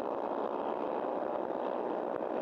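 Several small-displacement Honda race motorcycles running together on track, their engines making a steady mixed buzz.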